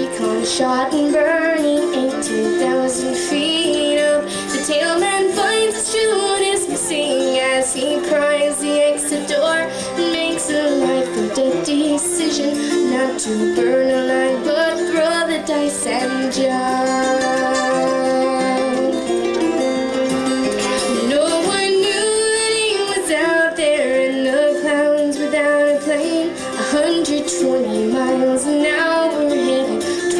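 Live acoustic string band: a steel-string acoustic guitar and a bouzouki picked under singing, led by a young woman's voice.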